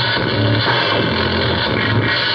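Experimental electronic music: a dense, noisy texture over a low, steady tone, at an even loudness throughout.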